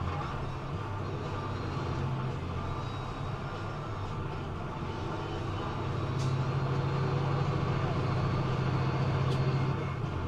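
Engine drone and road noise heard inside a vehicle's cab while cruising at about 40 mph. The low hum grows louder from about six seconds in as the vehicle speeds up slightly.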